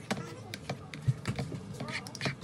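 Whisk stirring thick gravy in a frying pan, with irregular clicks and taps, several a second, as it strikes the pan.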